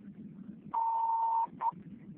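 Two-way radio alert beep: one steady tone held for under a second, then a short second beep.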